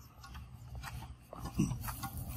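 Faint steady low background noise, with one brief low vocal sound, a short grunt or hum falling in pitch, about one and a half seconds in.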